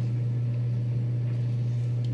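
A steady low-pitched hum that does not change.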